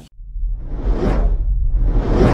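Whoosh sound effects over a deep rumble that builds, from a TV channel's animated logo sequence: one swoosh swells and fades about a second in, and another begins rising near the end.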